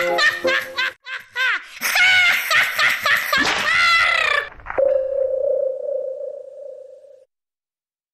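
Cartoon laughter, warbling and wobbling in pitch, for about four and a half seconds; then a sharp click and one steady ringing tone that fades away.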